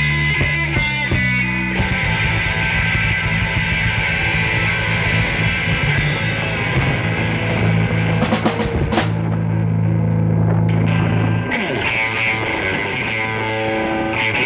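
A live rock band plays on electric guitar, bass guitar and drum kit. About nine seconds in the drums and cymbals drop out. In the last couple of seconds strummed electric guitar carries on almost alone.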